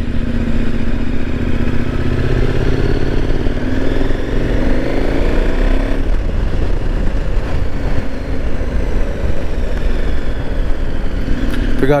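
KTM 1090 Adventure R's V-twin engine pulling away, its pitch rising for a few seconds as the bike gathers speed, then running on at a steady low road speed.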